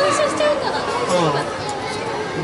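Chatter of several people talking at once, with no single clear voice, in a large indoor hall.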